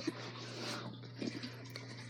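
Faint chewing of gummy worms, a few soft mouth noises over a low steady hum.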